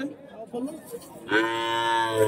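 One long moo from cattle, beginning about one and a half seconds in and held steady on one pitch.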